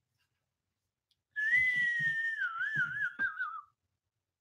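A person whistling one long note that starts about a second in, slides slowly down in pitch and wavers near the end.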